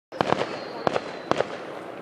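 Firework pops in three quick clusters: three sharp cracks, then two, then two more.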